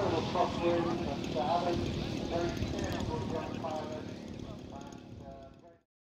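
Indistinct voices talking over low microphone wind rumble, with a faint propeller-driven model-aircraft engine in the background. The whole sound fades out and goes silent just before the end.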